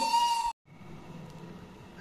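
Flute music holding a steady note, cut off abruptly about half a second in, then faint room noise.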